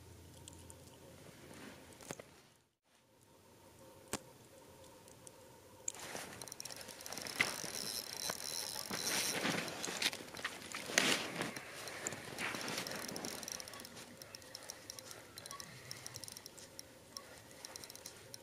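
Faint handling sounds of an ice-fishing rod and reel being worked, with scattered small clicks that grow busier about six seconds in.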